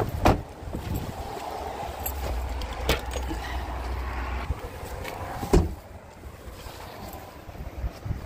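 Wind rumbling on the microphone, broken by three sharp knocks a couple of seconds apart.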